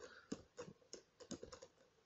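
Faint computer keyboard keystrokes: a string of about nine separate, irregularly spaced key presses.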